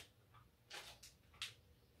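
Faint rustling of a thin clear plastic bag being handled, two short crinkles a little apart near the middle, otherwise near silence.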